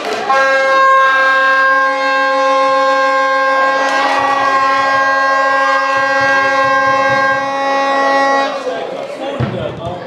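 A horn blown in the crowd, held on one steady note for about eight seconds and breaking off suddenly, with spectators' voices beneath it.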